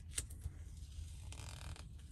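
A paper planner sticker being peeled back up from the page with the fingertips: faint small clicks near the start and a short, soft papery rustle around the middle.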